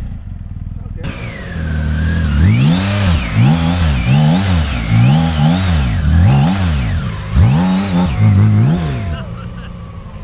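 Motorcycle engine revved up and down over and over, about once every two-thirds of a second, starting about two seconds in and stopping about nine seconds in.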